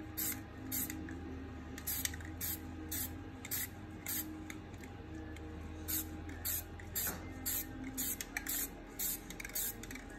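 Rust-Oleum 2X aerosol spray-paint can spraying in short hissing spurts, about two a second.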